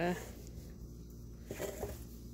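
A woman's voice trails off at the start, then a quiet pause with faint room hum and soft handling of a rolled-up fabric bag, and a brief voice sound near the end.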